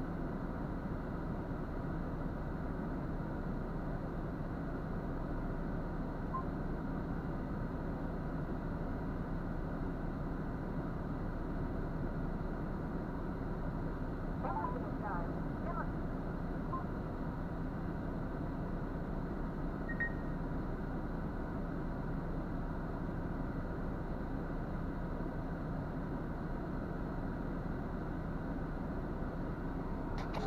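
Steady low hum of a MAN truck's diesel engine idling, heard from inside the cab.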